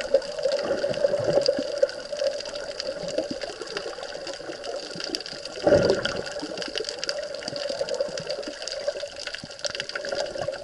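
Underwater sound through an action camera's waterproof housing: a steady watery rush with many fine crackling clicks, and one louder surge of water noise about six seconds in.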